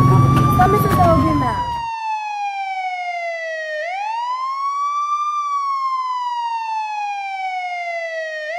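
Wailing siren: one tone that sweeps up quickly and falls slowly, repeating about every four and a half seconds. Street noise and a voice under it cut off suddenly about two seconds in, leaving the siren alone.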